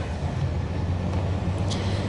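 Outdoor traffic ambience: a motor vehicle's engine running steadily as a low hum over road noise, with a brief hiss near the end.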